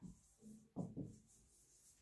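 Faint scratching of chalk writing on a chalkboard, in a few short strokes.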